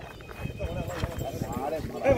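People talking, with irregular low knocks and bumps underneath.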